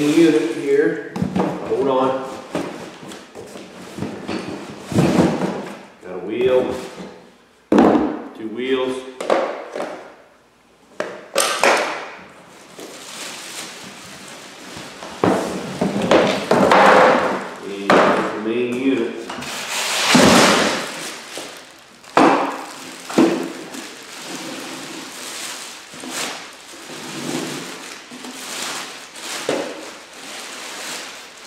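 Plastic packaging crinkling and a cardboard carton rustling and bumping in irregular bursts as a bagged pressure washer is handled and pulled out of its box, with a sharp thump about eight seconds in.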